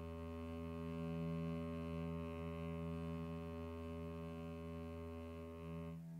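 Computer-generated orchestral accompaniment with no vocal line, holding one soft, low sustained chord in the strings and brass, steady throughout.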